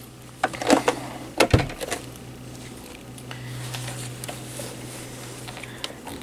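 Handling noise at a sewing machine as fabric pieces are moved and set under the presser foot: a cluster of knocks and clicks in the first two seconds, then a steady low hum with a few faint ticks.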